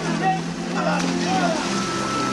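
Raised voices crying out in short calls over a steady low hum.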